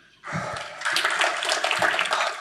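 Audience applauding at the close of a talk: a dense patter of many hand claps that starts about a quarter second in and swells about a second in.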